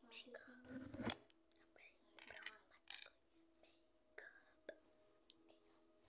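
Quiet speech and whispering in the first few seconds, then near silence. A faint steady hum runs underneath.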